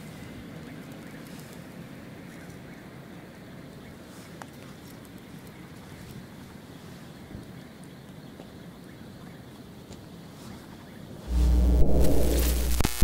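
Small wood campfire crackling faintly with a few soft pops over a steady outdoor hiss. Near the end a loud electronic logo sting with heavy bass cuts in suddenly.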